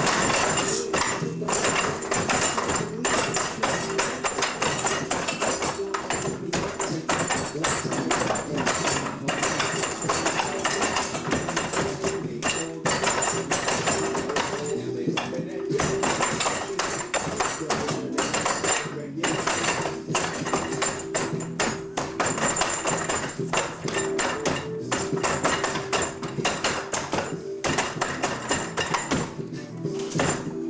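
Music with vocals plays throughout, over repeated quick knocks and slaps as hands and forearms strike a wooden dummy's wooden arms and padded trunk in rapid trapping combinations.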